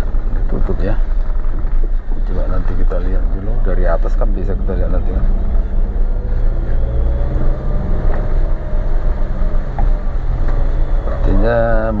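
Indistinct talking over a steady low engine hum, with a faint tone rising slowly in pitch midway.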